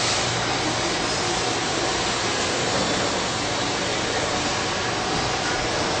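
Jeffer JF-200 carbide tool grinder grinding the teeth of a circular saw blade, its wheel running wet with coolant spray: a steady, even hiss.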